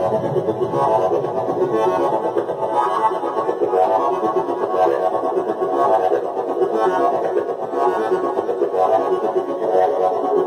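Access Virus synthesizer playing a sustained patch with a dense, buzzing tone, swelling brighter about once a second.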